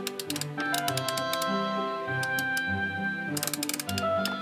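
Wooden toy gear wheels clicking in quick runs as they are turned by hand, over background music.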